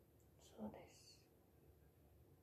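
Near silence: room tone, broken about half a second in by one brief, soft whisper from a young woman's voice.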